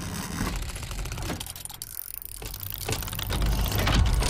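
Sound effects for an animated gear logo intro: rapid mechanical clicking like meshing gears turning. A low rumble builds up in the last second or so.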